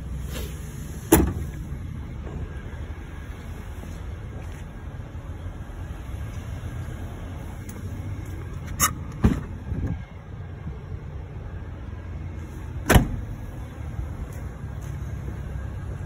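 A few sharp knocks and clicks (about a second in, a pair near nine seconds, and one near thirteen seconds) over a steady low rumble, as someone gets out of a 2004 Jeep Wrangler and handles its door.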